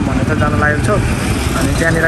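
A man talking, over a steady low background rumble.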